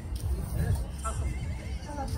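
Indistinct voices of people chatting around an outdoor meal, with an uneven low rumble on the microphone throughout.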